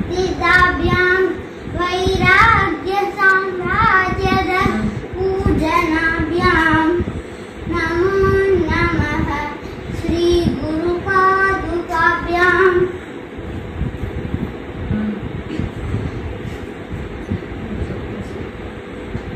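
A child's voice chanting Sanskrit verses in a sing-song melody, phrase after phrase with held notes, stopping about thirteen seconds in. After that only a steady hum remains.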